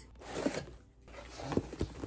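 Packing tape tearing and cardboard box flaps being pulled open, a noisy rustle followed by a few short knocks of cardboard in the second half.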